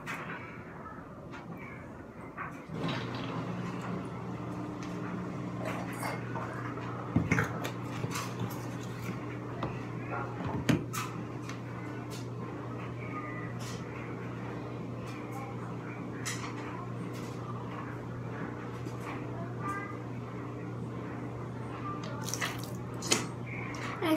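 A steady low mechanical hum switches on about three seconds in and runs on evenly, with a few sharp knocks and clicks of handling at about 7 and 11 seconds and near the end.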